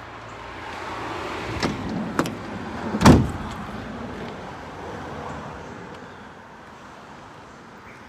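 A Ford Transit Custom's sliding side door being rolled along its track and shut, with a couple of clicks and one loud slam about three seconds in that dies away.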